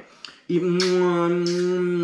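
A man's voice holding one long, level "и" (ee) sound for about a second and a half, starting after a brief pause about half a second in.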